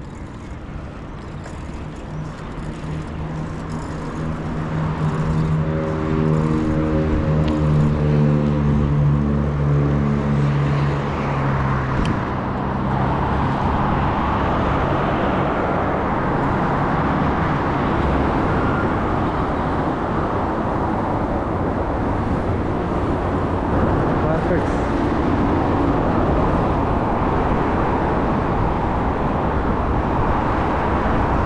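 Wind rushing over the camera microphone and tyre noise from a bicycle riding along a paved street, growing louder as the bike picks up speed. For the first ten seconds or so a steady low hum with a pitch to it runs underneath, then fades out.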